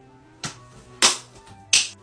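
Small pump spray bottle of argan oil spritzing three times in short hisses, the last two louder than the first, over faint background music.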